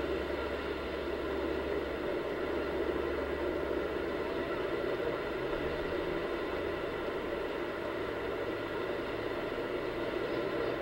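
Steady hiss with a low hum and faint steady tones underneath, unchanging throughout, with no distinct sound event.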